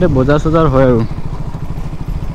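Motorcycle engine running steadily as the bike is ridden, with an even low pulse. A voice sounds over it in the first second.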